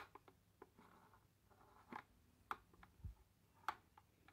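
Near silence broken by about five faint, short clicks and taps as hands handle the disassembled power-folding mirror mechanism, its metal casing and plastic mirror base.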